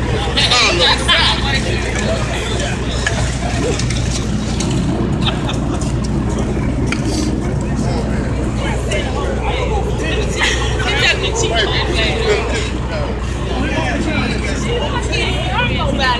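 Indistinct talk of several people at once, over the steady low hum of idling emergency-vehicle engines.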